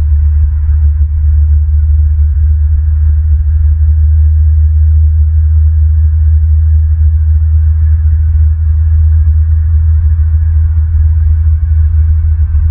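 A loud, steady low rumble that throbs slightly, with a faint hiss above it.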